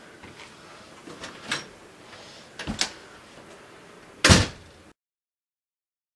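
A house door being opened and shut: a few sharp latch and handle clicks, then the door closing with a loud bang about four seconds in. The sound cuts off suddenly just after.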